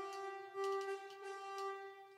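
A sampled orchestral horn from a software instrument sounds one steady held note. The note is auditioned as a MIDI note is selected and dragged in the piano roll.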